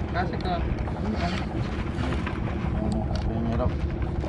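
Steady wind rumbling on the microphone over the sea around a small boat, with short snatches of speech.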